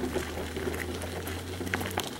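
Footsteps crunching on a gravel path, heard as irregular small crackles and clicks over a steady low hum.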